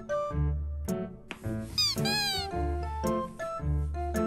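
Background music with a single cat meow about two seconds in, under a second long and arching up then down in pitch.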